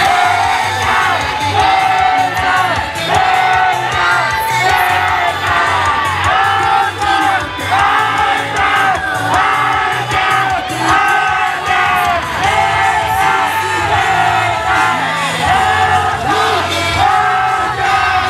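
Young female idol singers singing a lively pop song into handheld microphones over a recorded backing track with a steady beat.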